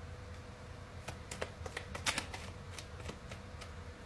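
A tarot card deck being shuffled by hand: a run of quick, dry card snaps and flicks that starts about a second in and is busiest around the middle.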